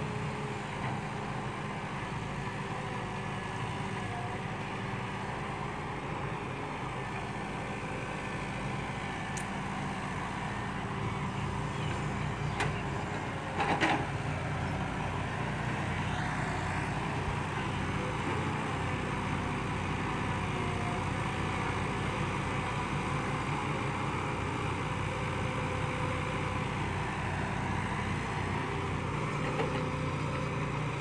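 Diesel engines of a Kobelco hydraulic excavator and a dump truck running steadily while the excavator digs and loads soil into the truck bed. Short knocks about halfway through, the loudest a brief thud.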